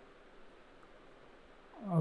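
Faint steady hiss of a quiet room and microphone, with no distinct sound event. A man's voice starts right at the end.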